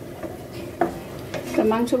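A wooden spatula stirring and scraping pieces of beef in a non-stick frying pan, over the steady sizzle of the meat being fried without water. There are two sharp knocks of the spatula against the pan about a second in, and a woman's voice starts near the end.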